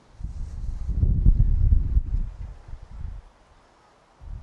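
Wind buffeting the microphone outdoors: an irregular low rumble that swells about a second in and dies away by about three seconds.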